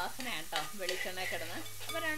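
Steel spoon stirring chopped onions in hot oil in a frying pan, sizzling, with scraping and a few light clinks of the spoon against the pan.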